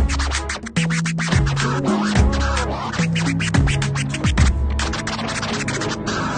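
A DJ scratching a track on a DJ controller's jog wheel over a mix with a heavy bass line. The sound is chopped into rapid stuttering cuts, with a pitch swoop every second or so.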